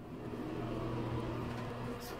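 A steady low mechanical hum that gets slightly louder just after the start.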